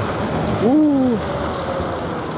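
Steady wind rush on the microphone and road noise from an electric scooter slowing down from top speed. About half a second in, the rider gives one short exclamation that rises and then falls in pitch.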